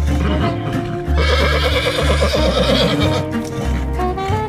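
A long, trembling horse whinny, voicing the unicorn puppet, starting about a second in and lasting about two seconds, over music with a repeating bass line.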